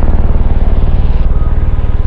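A loud, low, rapidly pulsing rumble.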